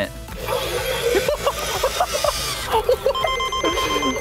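Electronic sound effects from an Imaginext Transforming Batmobile toy, set off by its 'Try Me' button and played through its small speaker, ending in a steady high beep about three seconds in. Background music runs underneath.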